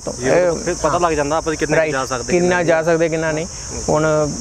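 A steady, high-pitched insect chorus, crickets or cicadas chirring without a break, behind a man's voice talking.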